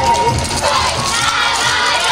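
A group of yosakoi dancers shouting calls together, many voices at once, over a recorded dance track with a steady bass beat about twice a second.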